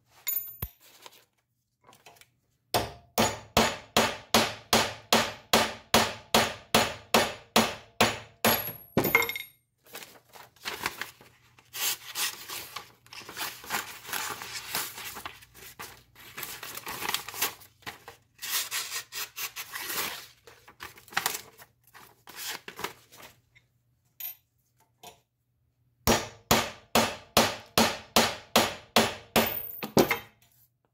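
Hammer blows on the knife over a steel anvil block, a fast even run of ringing metal strikes about three a second, as the edge is driven into a nail to dull it. In the middle, paper is sliced and rustled against the edge to check its sharpness, and near the end comes another run of ringing blows.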